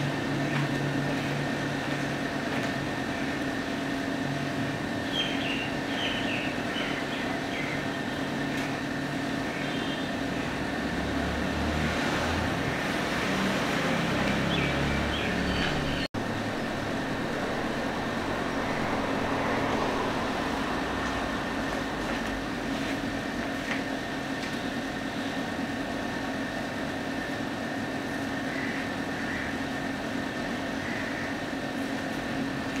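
Steady outdoor background noise with a constant hum and a distant road-traffic rumble. A low rumble swells for several seconds before the middle, and the sound drops out for an instant about halfway through at an edit.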